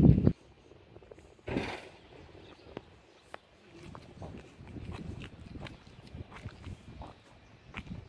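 Handheld outdoor recording: a loud burst of low wind rumble on the microphone cuts off just after the start, followed by a short gust about a second and a half in. Then faint scattered clicks and soft low thuds of footsteps on asphalt.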